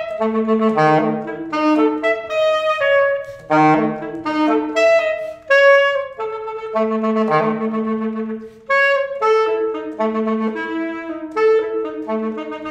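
Unaccompanied alto saxophone playing a quick line of separate notes that leap widely up and down, broken into short phrases with brief breaths between them.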